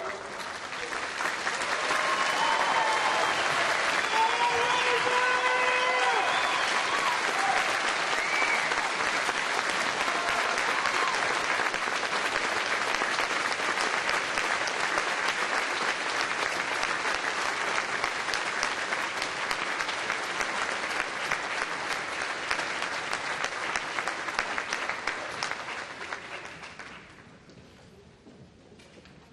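Audience applauding, with cheers and whoops over the first several seconds; the applause swells about a second in and dies away near the end.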